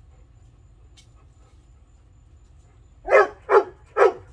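A large dog barks three times in quick succession, about half a second apart, near the end.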